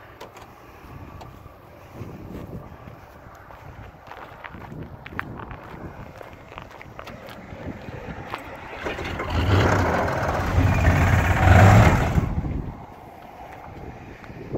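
Crash-damaged GMC pickup's engine started and run for about three seconds in the second half, then cut off suddenly, with the engine fan rubbing against the crushed front end. Before it, only faint knocks and clicks.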